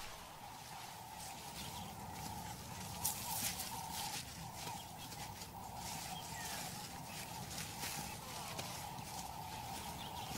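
Quiet bush ambience: a steady thin drone with soft rustling and crackling of leaves and grass as a leopard moves through the undergrowth carrying its kill, a few louder rustles about three to four seconds in.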